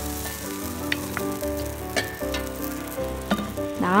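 Barley-and-chia pancake batter sizzling as it fries in a hot nonstick frying pan, with a few light clicks. Soft instrumental background music plays underneath.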